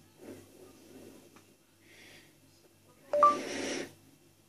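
A boy breathing close into a handheld karaoke microphone: soft breaths in the first second, then one loud, hissy exhale near the end lasting under a second.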